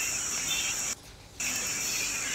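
Steady high-pitched background hiss that cuts out for under half a second about a second in.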